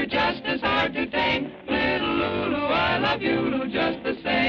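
Sung cartoon theme song with instrumental accompaniment: a vocal line gliding between notes in short phrases over the band.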